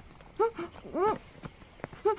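A young woman's muffled voice through a hand clamped over her mouth: two short, high, rising-and-falling 'mm' cries of protest.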